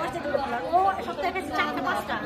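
Only speech: several people talking over one another in overlapping chatter.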